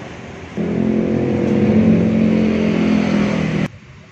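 A motor vehicle engine running steadily at close range, its hum coming in loudly about half a second in and cutting off abruptly near the end.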